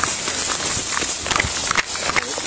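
Hurried footsteps on grass with the rustle and knocking of tactical gear, picked up close on a body-worn camera's microphone over a steady hiss.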